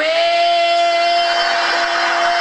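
A man's voice holding one long, steady sung note into a microphone, belted in mock karaoke style, with audience noise beneath it.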